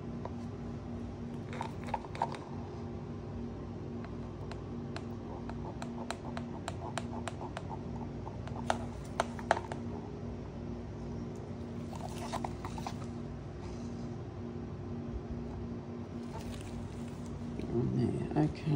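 A wooden stir stick scraping and tapping against a plastic cup as thick tinted resin is scraped out: scattered light clicks and short scraping runs over a steady low hum.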